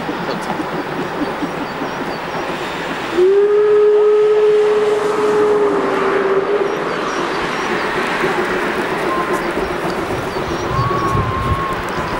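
Class 50 steam locomotive's whistle sounding one long, steady blast from about three seconds in, lasting about three seconds and dipping slightly in pitch as it ends. Around it is the steady noise of the working train.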